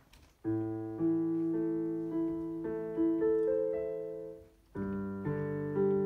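Digital piano playing the opening bars of a simple piece: a held bass note under a melody of single notes, starting about half a second in. There is a short break after about four and a half seconds, then a new phrase begins on a low chord.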